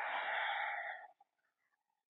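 A woman's long, audible exhale through the mouth, a soft breathy rush that fades out about a second in.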